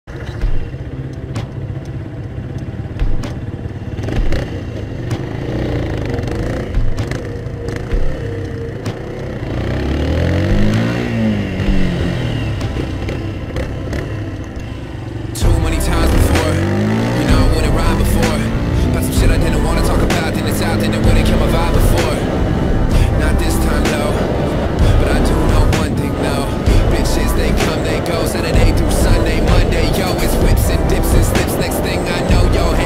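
Kymco Quannon 125 motorcycle engine running, its pitch rising and falling as it is revved. About halfway through, music with a beat comes in suddenly, louder, over the engine and riding noise.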